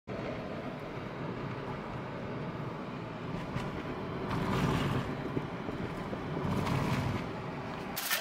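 Road and engine noise heard inside a moving Proton car's cabin: a steady low rumble that swells louder twice, about halfway through and again near the end.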